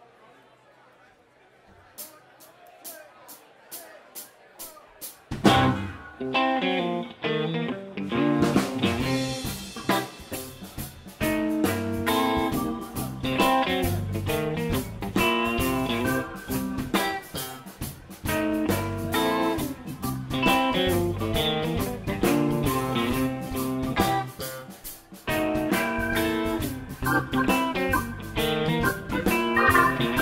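Live rock band starting a song: after a couple of quiet seconds and a short run of evenly spaced clicks, electric guitars, bass, drums and keyboard come in together about five seconds in and keep playing.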